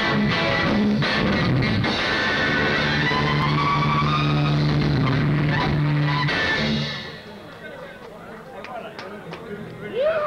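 Live rock band with saxophone, electric guitar, bass, drums and vocals playing loud on a camcorder recording with poor sound quality. The music stops sharply about seven seconds in, leaving quieter talking.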